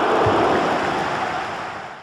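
A steady rushing, surf-like whoosh from the intro sound effect, with no tune or voice, fading out over the last second.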